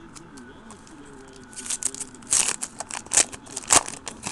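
Foil trading-card pack wrapper being torn open and crinkled by hand, a quick run of sharp crinkles starting about a second and a half in.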